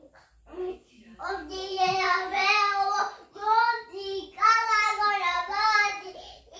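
A young child singing, starting about a second in with long held notes in three phrases.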